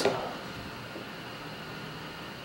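Quiet room tone: a steady faint hiss with nothing happening, after a spoken word trails off at the very start.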